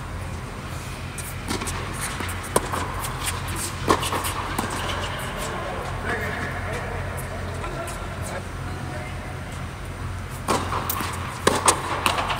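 Tennis balls struck by racquets during a doubles rally: sharp pops about two and a half and four seconds in, then several in quick succession near the end, over a steady low hum.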